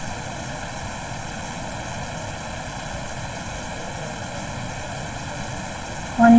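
Steady background noise: an even hiss with faint constant tones, unchanging throughout.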